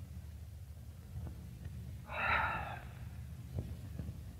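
Steady low hum of an old film soundtrack, broken about two seconds in by a short breathy rush of noise, with a couple of faint clicks.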